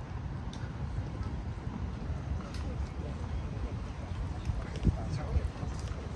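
Outdoor walking ambience on a paved park path: a steady low rumble, faint voices of passers-by, and a couple of footstep thumps near the end.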